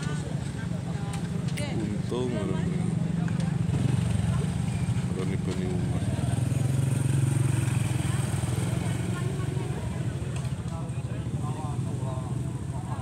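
A vehicle engine, most likely a motorcycle's, running steadily at idle close by, with people talking in the background.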